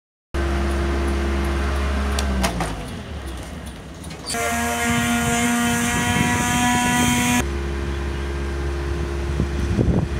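Boatyard travel lift's engine running with a steady low hum, its pitch dropping as it slows about two seconds in; for about three seconds in the middle a higher machine whine with hiss takes over, then the low hum returns.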